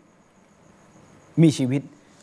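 A man's voice lecturing in Thai pauses, then says a couple of words about a second and a half in. During the pause a faint, high, evenly pulsing tone can be heard under low room noise.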